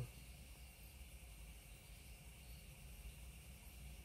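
Near silence: faint steady background hiss with a low hum.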